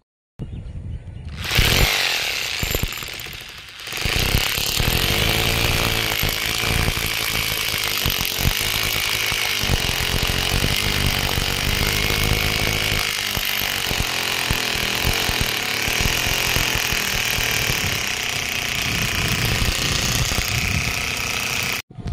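Electric hammer drill boring a hole into a concrete parapet wall, the motor whining over a rapid hammering rattle. It starts with a short burst about a second in, pauses briefly, then runs steadily until it stops abruptly just before the end.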